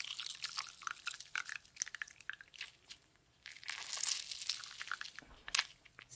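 A lemon being handled and worked by hand in a kitchen: a run of small crackly, wet crunches and clicks, with a short lull about halfway, a denser patch just after, and one sharper click near the end.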